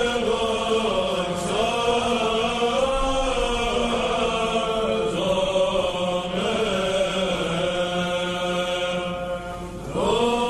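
A male monastic choir chanting Byzantine chant in Greek: a slow, melismatic melody moves over a steady low held drone (the ison). The phrase thins out briefly near the end, and the next phrase begins.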